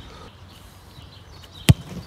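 A single sharp thud of a football being struck hard, about one and a half seconds in, over faint background noise.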